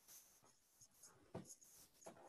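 Near silence on a video-call line, with faint scratching and a few small clicks.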